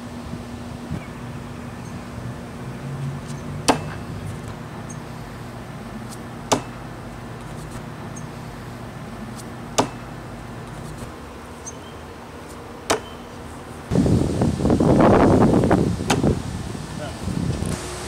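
A double-bit throwing axe striking a wooden log-round target four times, each hit a single sharp thunk about three seconds after the last. Near the end comes a loud rushing noise lasting about two seconds.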